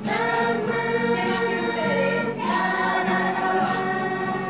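A group of voices singing together in chorus, holding long notes, with the melody moving to new notes about two and a half seconds in.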